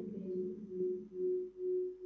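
A steady low whistling tone that swells and fades about twice a second, typical of audio feedback ringing through the hall's speakers from the video-call audio.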